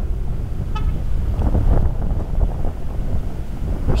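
Steady low rumble of a moving vehicle with wind on the microphone, and one brief high tone about three-quarters of a second in.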